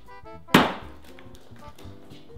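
A single sharp thump about half a second in, a hand slamming down into a bowl of chopped food mixture, with a short ringing tail. Light background music plays under it.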